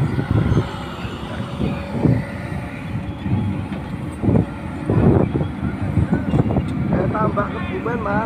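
Hydraulic excavator's diesel engine running, a low rumble that swells and eases as the machine works. Voices call out near the end.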